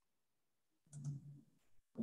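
Near silence on a video-call recording, broken about a second in by a faint click and a brief, low, voice-like murmur.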